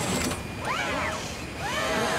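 Cartoon sound effect of a twin-barrelled gun turret's motor whining as it swivels and aims, in rising-and-falling sweeps about once a second over a steady low mechanical hum.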